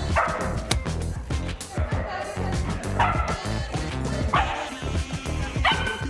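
Puppy barking in play: four short barks spread across a few seconds, over background music.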